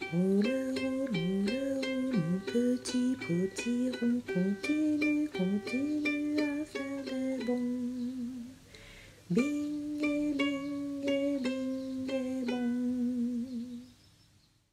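Closing music: a plucked ukulele tune with a wordless melody line over it that slides up into its notes. It breaks off briefly a little past eight seconds in, then plays one last phrase.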